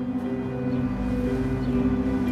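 Soft background score of steady held notes, with a low rumble underneath that grows about halfway through.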